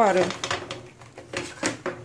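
Red picture frames being handled and moved on a table, giving a series of light, irregular clicks and knocks.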